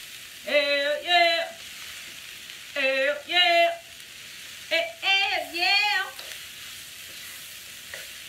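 Sliced cabbage, onions, ginger and garlic sizzling in sesame oil in a skillet while being stirred, a steady frying hiss. Over it, a woman's voice makes three short wordless, wavering sung phrases, the loudest sounds.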